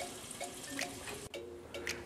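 Beef stock poured in a thin stream into a pot of fried bacon and vegetables, a steady splashing pour that stops about a second and a half in.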